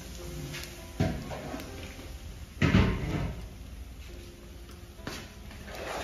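A large aluminium wok lid being lifted and handled, with metal clanks and knocks against the wok and the metal basin. There are three knocks, the loudest about two and a half seconds in and ringing briefly.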